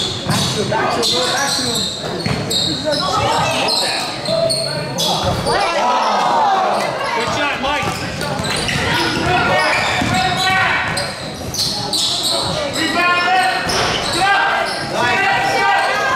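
A basketball dribbled on a hardwood gym court, its bounces ringing in the hall, amid the indistinct voices of players and spectators.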